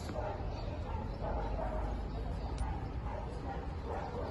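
A dog whining softly in several short high whines as it jumps up and greets a person excitedly.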